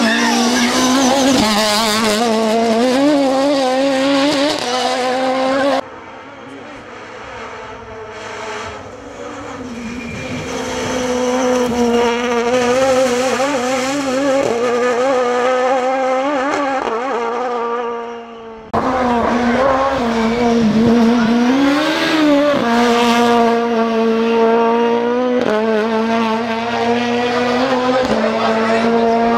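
Toyota Starlet rally car's engine revving hard at high rpm. It is loud at first, drops away abruptly about a fifth of the way in, swells back up, then returns suddenly to full loudness about two-thirds of the way through.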